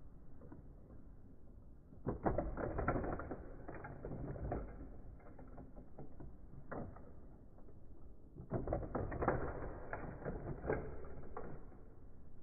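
Rapid mechanical clicking and rattling in two bursts of about three seconds each. The first starts about two seconds in, the second a little past the middle.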